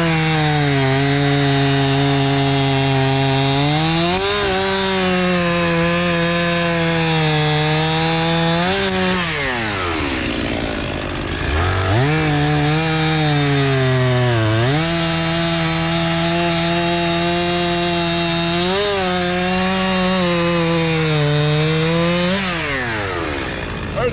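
Two-stroke chainsaw cutting through a cherry log at high revs under load, its pitch sagging and lifting as the chain bites. About ten seconds in the engine drops off throttle, then revs up again for a second cut, and it falls back toward idle shortly before the end.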